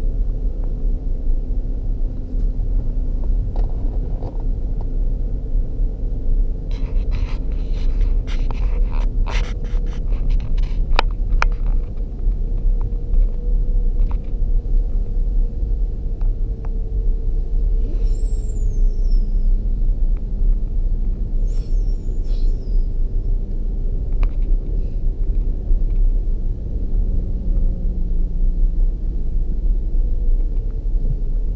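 Land Rover Discovery 3 driving along a wet sand beach, heard from inside the cabin as a steady low rumble of engine and tyres. A run of short clicks and knocks comes about a third of the way in, and two brief high chirps come past the middle.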